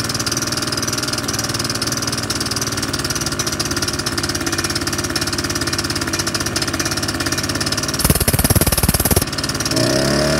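Paramotor engine and caged pusher propeller idling steadily on a home-built kart during a motor test, with a loud rush of noise lasting about a second, some eight seconds in.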